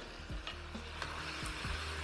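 Sweet-and-sour pork sizzling steadily in a wok as a thin starch slurry is ladled in and stirred, with a few faint clicks of the metal ladle against the wok.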